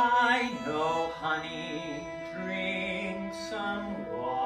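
Live chamber opera: a singer's voice with a wide vibrato, loudest at the start, over a small string ensemble of violins and cello holding sustained notes.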